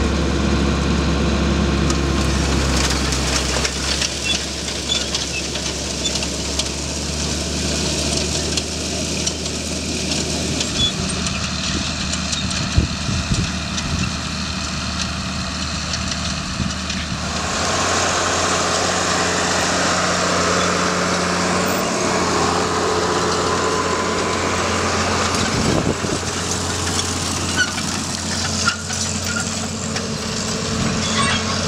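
Tractor engine running steadily while it pulls a row-crop corn planter. A little past the middle the sound turns noisier and hissier, with a few light knocks.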